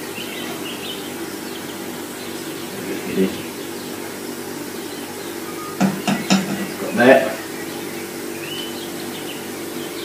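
Amber ale being drawn from a keg fridge's beer tap into a glass over a steady low hum, with a few clicks and knocks about six to seven seconds in as the tap is worked.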